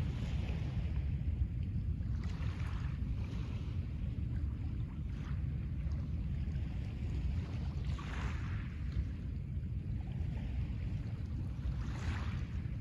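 Small waves lapping on a pebble shore, a soft wash roughly every three seconds, over a steady low rumble.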